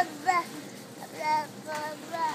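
A toddler's high-pitched voice singing out in short wavering calls: a brief one near the start, a longer one a little past the middle, and another short one near the end.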